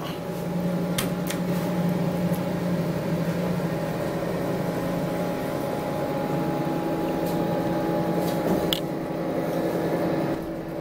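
Otis elevator machinery running with a steady hum, its low tone giving way to a higher one about halfway through, with a sharp click about a second in and another near the end.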